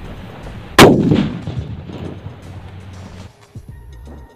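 A sutli bomb (string-wrapped firecracker) strapped to a small LPG cylinder goes off with one loud bang about a second in, followed by a rumble that dies away over about a second. The blast is the firecracker's alone: the cylinder does not burst and is left only dented.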